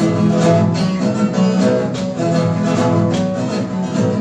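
Instrumental break of a sertanejo caipira (moda de viola) song: a ten-string viola caipira picking a lively melodic run over a strummed nylon-string acoustic guitar, with no singing.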